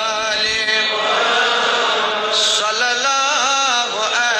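An Urdu naat sung as a devotional chant, the voice holding long notes that waver and bend in ornamented turns.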